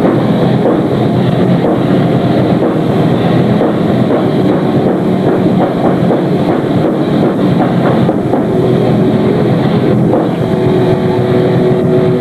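Black/death metal band playing live: heavily distorted electric guitars with bass and drums in a dense, unbroken wall of sound. In the last few seconds a held guitar note rings out over the rest.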